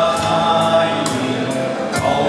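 Men's choir singing in harmony through a PA sound system, over a backing with a steady percussive beat about twice a second.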